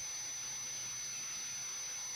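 Steady low hiss with a thin, constant high-pitched whine: the background noise of the recording, with no distinct event.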